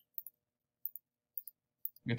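Quiet computer mouse clicks: four pairs of short, sharp clicks, about one pair every half second, as layers are selected in turn.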